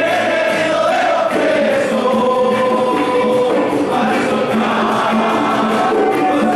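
A group of voices singing a hymn together, a church congregation's praise song, with held melody notes and musical accompaniment.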